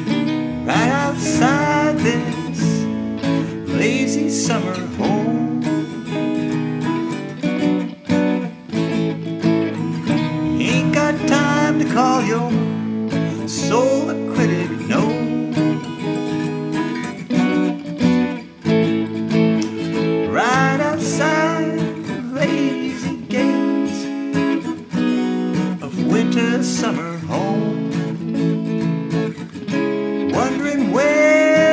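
Guitar music: a steel-string acoustic guitar strumming chords under an electric guitar lead line full of string bends, with no vocals yet.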